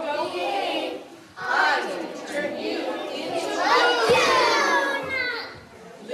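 A group of young children singing a song together in unison, high voices with some shouted, sliding notes; the singing breaks briefly about a second in and again near the end.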